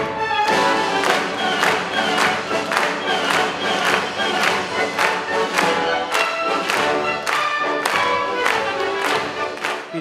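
Orchestra led by its strings playing a lively classical piece, with sharp accents about twice a second.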